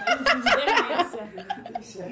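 A woman laughing in short, broken snickers.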